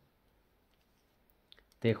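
Near-silent room tone, then a few faint short clicks about a second and a half in, just before a man's voice starts speaking.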